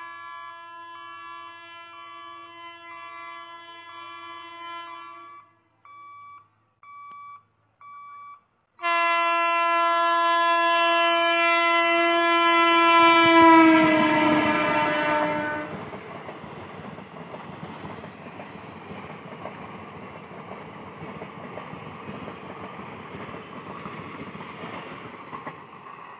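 An Indian Railways electric locomotive's horn sounds a long steady blast on approach, then three short toots. About nine seconds in it gives a loud sustained blast whose pitch drops as the locomotive passes close by. The express's coaches then rumble and clatter past on the rails.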